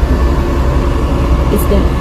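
Steady low rumble of a car heard from inside its cabin, under a voice.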